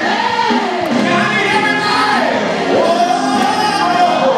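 Male gospel singer singing live into a microphone, his voice sliding up and down in long, arching runs.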